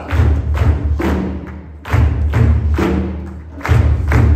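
Live hand drumming with a steady, deep beat, and the standing audience clapping along.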